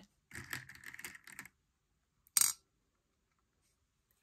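Hard-shelled Skittles candies rattling and clicking in a plastic bowl as fingers pick through them, then a single sharp click about two and a half seconds in as one candy is set down on a plate.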